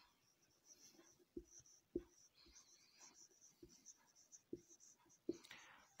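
Faint squeaks of a marker pen writing on a whiteboard: a string of short strokes with light taps of the pen tip.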